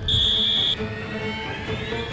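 A loud, steady, high-pitched buzzer tone lasting about two-thirds of a second that cuts off suddenly, over background music. A fainter rising tone follows it.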